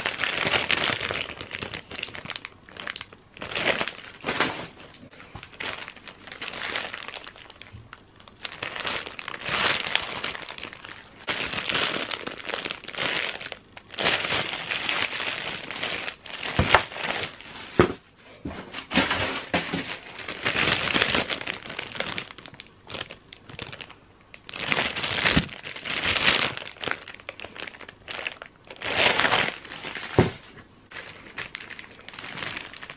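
Thin clear plastic bags crinkling in repeated bursts as bottles are pulled out of them, with a few sharp knocks in between.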